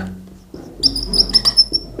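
Whiteboard marker squeaking across a whiteboard as words are written: a quick run of short, high squeaks starting just under a second in and lasting about a second.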